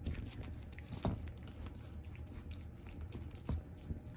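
Young puppies gumming and chewing on a fleece blanket as they shuffle about: soft mouthing and rustling with scattered small clicks, two sharper ones about a second in and just past three seconds.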